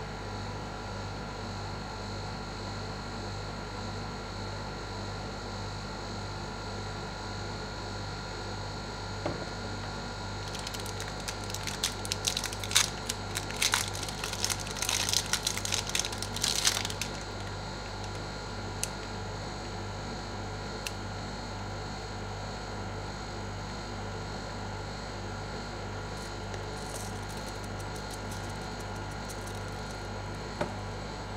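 Steady low hum of the ice pan machine's refrigeration unit. Midway, a burst of crackly rustling and clicks lasts about six seconds, and a few single clicks follow later.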